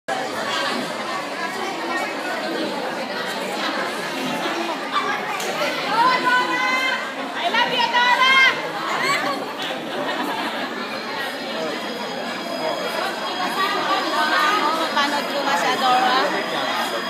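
Crowd chatter echoing in a large hall: many voices talking at once, with a few louder voices standing out about six to nine seconds in.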